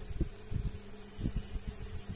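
Small bead lathe's electric motor humming steadily, with a few soft low knocks from hands and tools handling the machine.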